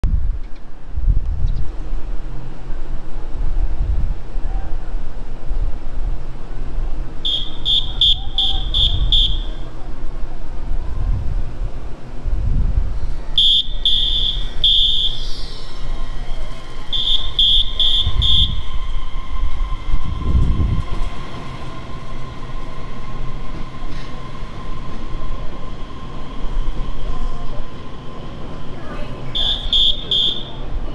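Rapid high electronic beeping, about four beeps a second, comes in four short bursts at a Taiwan Railway platform, the warning signal for a train's departure. A steady low rumble runs under it, and about halfway through a steady mid-pitched hum sets in.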